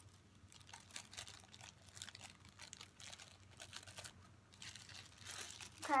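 Plastic packaging crinkling faintly and irregularly as it is handled.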